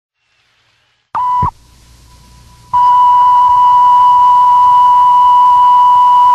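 A short electronic beep, then after about a second and a half of faint hiss the same steady tone comes in again and holds loud and unchanging, like a line-up test tone at the head of a tape.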